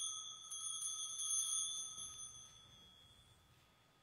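A small altar bell is struck a few quick times, and its high, clear ring fades away over about three seconds. It sounds at the invitation to Communion.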